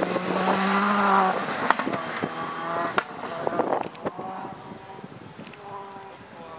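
Škoda Fabia rally cars at full throttle on a gravel stage: a loud engine at high revs with several sharp cracks. After about 4 s a second car is heard, further off and quieter.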